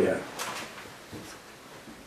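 A man's voice trails off, then a short rustle of a paperback book's pages being handled about half a second in, followed by quiet room tone.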